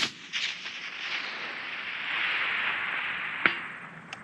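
The rolling echo of a precision rifle shot fired a moment earlier, a long hiss-like rumble that swells and fades over about three and a half seconds. A faint sharp tap comes near the end.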